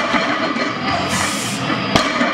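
Loud, dense background music running steadily, with a sharp hit just before the end.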